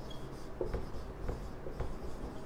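Marker writing on a whiteboard: a series of short strokes, with a brief squeak of the tip near the start.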